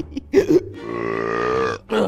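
A young man's long belch, held for about a second with the pitch sinking slightly at the end.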